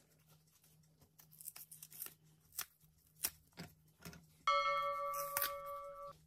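Green plantain skin being slit with a knife and pulled away by hand: scattered short scrapes and soft tearing. Near the end, a loud steady bell-like chime holds for about a second and a half and cuts off suddenly, a sound effect with an on-screen subscribe pop-up.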